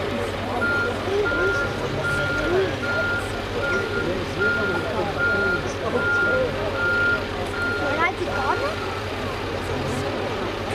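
A truck's electronic warning beeper sounding one steady tone over and over, a little more than once a second, stopping near the end. Under it a diesel engine runs steadily and people talk.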